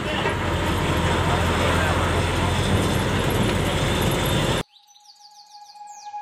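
Steady engine hum and road noise inside a moving bus, cutting off abruptly about four and a half seconds in. Faint tinkling music begins just after.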